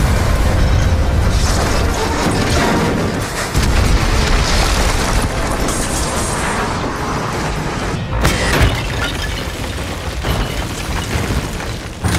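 Movie explosion sound effects: a heavy boom and rumble from a blast, with fresh surges of rumble and crashing debris a few seconds in and again past the middle, over film score music.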